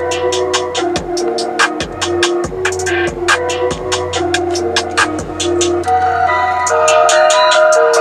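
Electronic music with a steady drum beat and deep bass, played over a BMW's Harman Kardon sound system and heard in the car's cabin.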